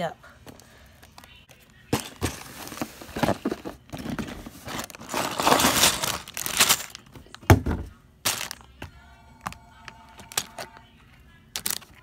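A cardboard Lego set box being torn open, with crackling rips and tearing about two to eight seconds in and a sharp knock near the end of that. Then quieter rustling of the plastic parts bags.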